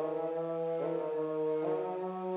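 A sustained vocal-pad sample from a beat plays a slow chord progression, changing chord twice. Its lows and some of its mids have been cut with an equalizer.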